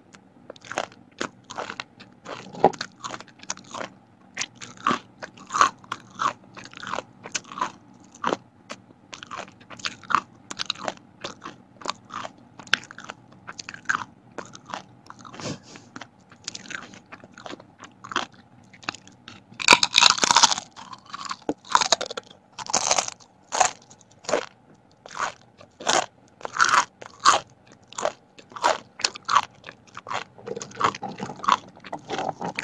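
A person biting and chewing thin, crisp vegetable crackers: a steady run of sharp crunches and crackles, loudest from about twenty seconds in.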